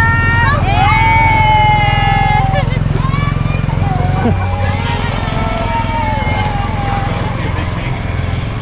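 Small motorcycle engine idling steadily, with a lower, changed note from about four seconds in, and voices calling over it.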